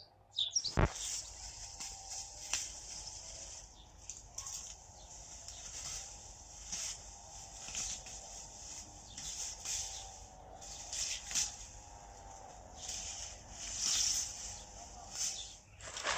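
Faint garden ambience of small birds chirping in short, repeated calls, over a faint wavering hum. A single knock sounds about a second in.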